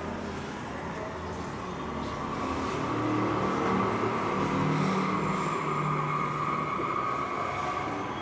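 Steady road-traffic noise, swelling for a few seconds in the middle as a vehicle engine goes by.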